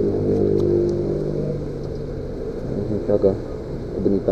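Single-cylinder engine of a Yamaha Factor 150 motorcycle idling steadily, a little quieter after the first second or so. A short burst of a voice comes about three seconds in.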